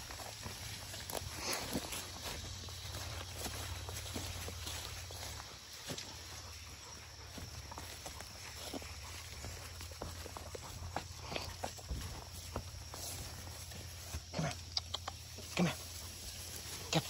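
Footsteps and leafy rustling as a person and a leashed dog push through low undergrowth on a woodland trail, with many small, irregular crackles. A few short, louder breathy or voice-like sounds come near the end.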